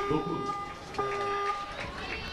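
A beep tone sounding twice, a second apart, each beep held for well under a second, with voices under it.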